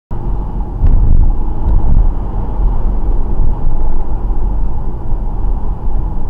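Car driving slowly on a suburban street, heard from inside the cabin: a steady low rumble of engine and tyre noise, with two faint ticks in the first two seconds.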